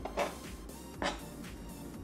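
A freshly sharpened kitchen knife slicing through a tomato onto a plastic cutting board: two short cuts about a second apart, over steady background music.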